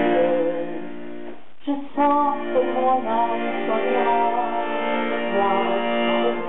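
Accordion playing the accompaniment to a French chanson between sung lines, with a short break about a second and a half in before a moving melody resumes.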